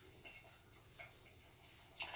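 Near silence: room tone with a few faint, soft ticks, one slightly louder about a second in.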